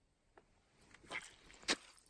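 Faint handling and rustling noises as the camera is moved, with a single sharp click near the end.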